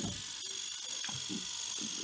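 Electric microneedling pen buzzing steadily against the scalp, a high-pitched whine as its needles prick the skin to make small wounds in the hair follicle area.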